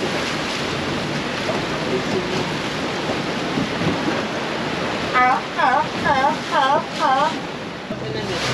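Wind and choppy sea water rushing around a small open boat, a steady noise. About five seconds in, a run of five short repeated calls comes through, about two a second.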